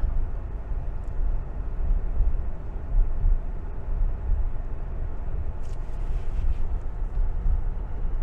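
Steady low rumble of a vehicle's engine and tyres, heard from inside the cab while driving on the road. A few faint clicks about six seconds in.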